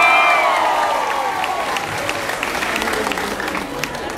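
A crowd cheering, the shouts fading over the first second or so, followed by a crowd applauding.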